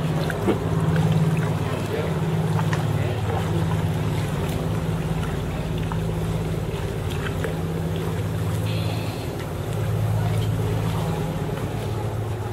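A boat engine running steadily with a low hum, with voices mixed in.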